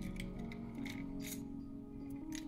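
Background music with steady held tones, over a few light clicks of a T-handle Allen wrench against the metal burr carrier of a hand coffee grinder as the front burr screws are loosened.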